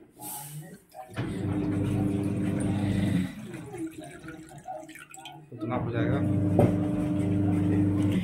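Water poured from a small steel pot into a black iron karahi on a gas stove, splashing into the pan at the start. A steady low droning hum runs underneath in two long stretches.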